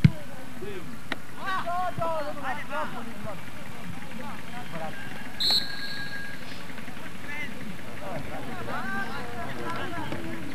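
Distant shouting voices on a football pitch over steady background noise, with a sharp thump at the very start and one short, high referee's whistle blast about five and a half seconds in, as play is stopped for a foul.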